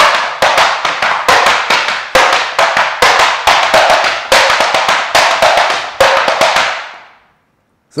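Tap shoes' metal taps striking a wooden tap board in a quick run of sharp clicks: a swing-rhythm combination of brushes, back brushes and hops. The tapping stops about seven seconds in.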